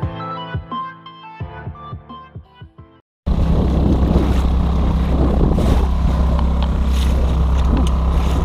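Background music that fades out about three seconds in. After a moment of silence it cuts to the sailboat's motor running steadily under way, with water rushing past the hull.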